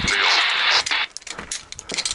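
Handheld two-way radio receiving a hissy, static-laden transmission for about a second. The hiss cuts off suddenly, leaving a few small clicks.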